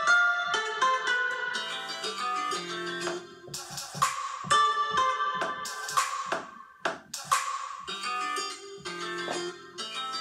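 Drum Pad 24 app on a tablet playing sampled loops and one-shots as its pads are tapped: a plucked, guitar-like melody over sharp percussion hits in a summery Latin style.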